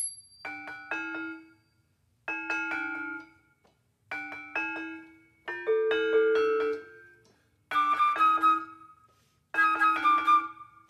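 Acoustic kroncong string band playing the opening of a piece: short bright figures of a few plucked and struck notes, stopping and starting again in separate phrases about every two seconds, with one longer held phrase near the middle.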